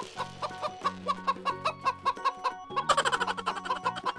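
Chicken clucking, a quick run of short clucks about five a second, over background music with a steady bass line; the clucking gets louder and busier about three seconds in.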